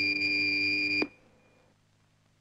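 Electric foil scoring apparatus sounding its touch signal, a steady electronic beep that marks a registered hit. It cuts off suddenly about a second in.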